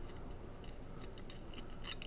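A few faint metallic clicks and scrapes, more of them in the second half, as a brass right-angle SMA adapter is threaded onto a hotspot's antenna port by hand.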